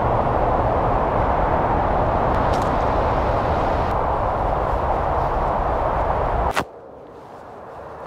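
Steady rushing noise with a low rumble, like wind buffeting an exposed camera microphone on a moving vehicle, cut off abruptly about six and a half seconds in.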